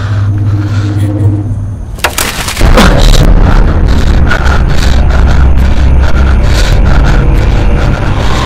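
A low steady hum, then about two seconds in a sudden crack and a loud low rumble that carries on: a truck passing close by on the road.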